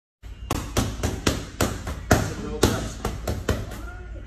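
Boxing gloves striking focus mitts in fast combinations: about a dozen sharp smacks in quick, uneven succession.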